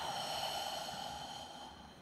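A long out-breath through the mouth, close to a headset microphone, fading away over about two seconds.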